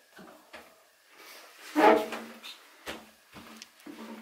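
A few soft, scattered knocks and bumps in a small bathroom, with a boy saying a single word, "I", about two seconds in.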